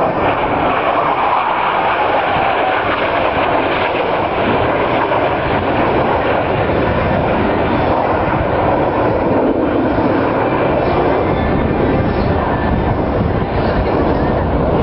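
Jet engines of a four-ship formation of fighter jets flying past, a loud steady roar.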